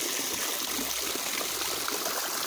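Spring water pouring in thin streams from a steel spout over a stone wall and splashing below, a steady rush of running water.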